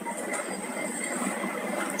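Steady background hiss of the recording in a gap between speech, with a faint high steady whine running through it.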